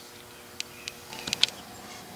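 A few light clicks and taps, clustered between about half a second and a second and a half in, over a faint steady hum.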